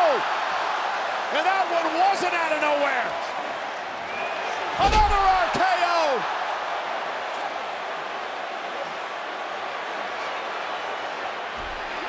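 A wrestler's body slamming onto the wrestling ring mat with a heavy thud about five seconds in, over steady arena crowd noise with rising and falling voices reacting.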